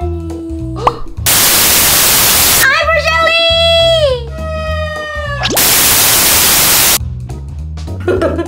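Background music with a steady beat, cut through twice by loud bursts of hiss-like static, about a second in and again after five and a half seconds, each lasting about a second and a half. Between the bursts comes a high held vocal-like tone that slides down, then a shorter steady tone.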